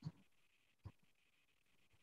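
Near silence: faint room tone over a video-call microphone, broken by two short faint clicks, one at the start and another about a second in.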